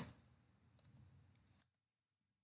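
Near silence: room tone, with two faint clicks, one a little under a second in and one near the end.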